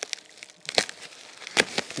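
A woven plastic sack wrapping a carton being cut and ripped open with a box cutter. Faint rustling is broken by a few short, sharp rips and crackles, mostly in the second half.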